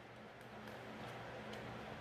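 Faint rubbing of a felt-tip erasable marker pen drawn along the edge of a paper template onto fabric, over a low steady hum.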